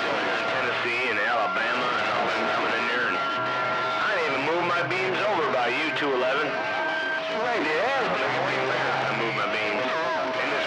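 RCI 2980 radio receiving long-distance skip: several garbled voices overlapping, with steady whistle tones and band noise underneath, a sign that the band is still open.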